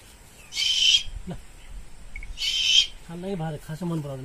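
An owl hissing twice, each a harsh, breathy burst of about half a second, as a hand reaches toward it. This is a defensive warning hiss. A man's voice starts near the end.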